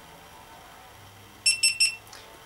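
GoPro HERO2 camera beeping as it powers on: three short, high-pitched beeps in quick succession near the end.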